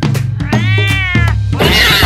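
A cat's meow, one rising-and-falling call about half a second in, over children's background music with a steady low beat. Near the end a loud noisy burst, a scuffle-like sound effect, cuts in.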